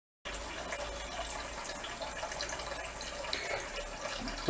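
Water running steadily through the still's pump-fed cooling hoses and trickling back into the bucket, with a faint low hum beneath. It cuts in suddenly just after the start.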